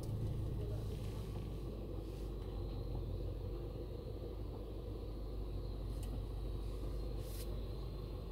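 A 2009 Audi A3's engine idling, a steady low hum heard from inside the cabin, with two faint light clicks in the second half.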